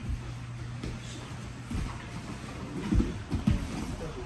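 Grapplers wrestling on foam mats: bodies shuffling and scuffing, with a few dull thumps, the loudest about three seconds in.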